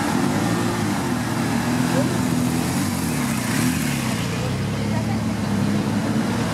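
Busy city traffic passing close by: cars, vans and a motor scooter driving over cobblestones, a steady noise of engines and tyres with engine notes rising and falling as vehicles pull through.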